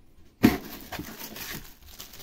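Handling noise from a cardboard shipping box and a plastic blister pack as a packaged vegetable peeler is lifted out: one sharp click about half a second in, then light rustling and scraping.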